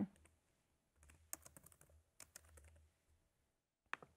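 Faint typing on a laptop keyboard: a scattered run of light keystrokes through the middle, with one sharper click near the end.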